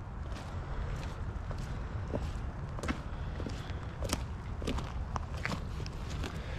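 Footsteps on wet grass and gravel, irregular steps about one to two a second, over a steady low rumble.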